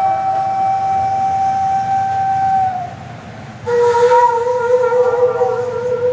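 Daegeum, the large Korean bamboo transverse flute, holding one long note that dips slightly in pitch as it ends. After a short pause, a lower long note starts, with a wavering tone.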